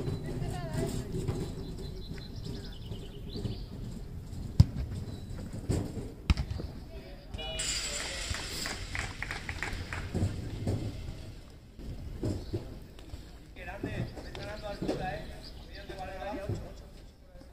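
Football being kicked on an outdoor pitch, two sharp thuds about four and a half and six seconds in, amid players and spectators calling out and shouting, loudest in a burst around the middle.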